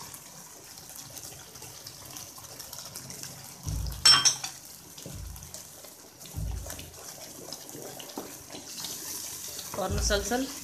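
Wet semolina halwa bubbling in a pan while a wooden spatula stirs it steadily, with a sharp knock of the spatula against the pan about four seconds in and a few dull low thuds.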